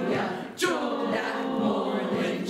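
Soprano and alto choir section singing a cappella in sustained notes of a spiritual. About half a second in they break briefly, then enter sharply on a new phrase.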